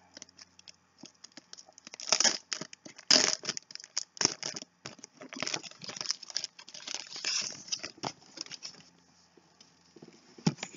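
Plastic wrapping being torn open and crinkled off a hardcover book: irregular crackling and tearing bursts, loudest about two and three seconds in and again through a longer stretch in the second half.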